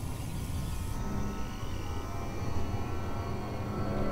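Horror film score: a low rumbling drone with faint sustained eerie tones held over it, starting to build near the end.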